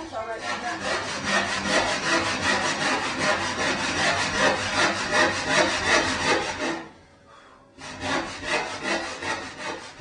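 Hand saw cutting through wood in rapid, even strokes, stopping for about a second before carrying on.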